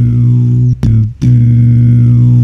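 Beatboxed hum bass: a loud, low droning note held at one steady pitch by a beatboxer's voice, broken by two brief gaps around the middle.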